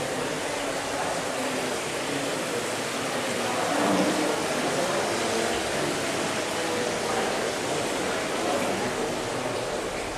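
Large-room ambience: a steady hiss with faint, indistinct voices murmuring under it.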